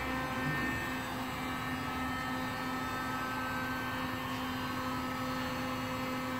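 Heat gun running steadily, its fan blowing with a constant hum, as it heats a plastic bumper cover soft so that a crease can be worked out.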